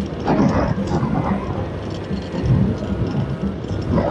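Music with a repeating bass beat from a roadside wedding's loudspeakers, heard from a moving motorbike with engine and road noise underneath.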